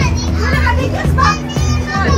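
Background music with a steady beat, with children's high-pitched voices calling and shrieking over it, loudest about a second and a half in.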